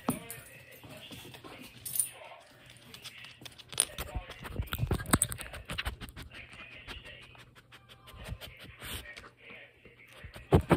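Irregular clicks, taps and scratchy rubbing, with a cluster of louder knocks around the middle, as a small shaggy dog noses and bumps a phone lying on the floor.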